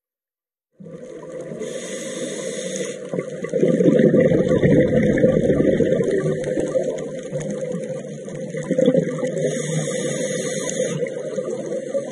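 Underwater sound of a scuba diver breathing through a regulator, heard through the camera housing: a short inhalation hiss about two seconds in, then the rumble of exhaled bubbles, and the same hiss-then-bubbles cycle again near the end.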